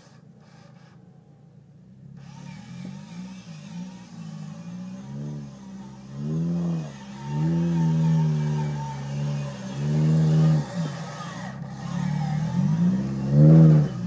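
Off-road Jeep's engine revving hard in repeated surges as the truck winches itself up a steep bank, its pitch climbing and dropping every second or two. It starts faint and grows louder, with the loudest rev near the end.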